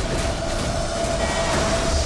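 Dense action-trailer sound mix: a loud rushing, rumbling noise with one steady high tone held over it.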